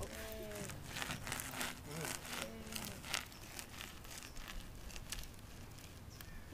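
A few short hums or murmured voice sounds, with a run of sharp crackling clicks over the first three seconds, then quieter outdoor background.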